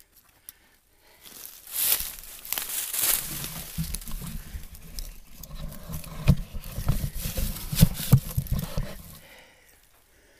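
Close rustling and crinkling of tarp fabric and dry oak leaves, with low bumps of handling noise, as the camera is moved in under a tarp shelter. It starts about a second in and stops shortly before the end.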